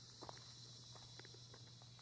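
Near silence: a faint, steady high-pitched drone of insects in the woods, with a few faint ticks.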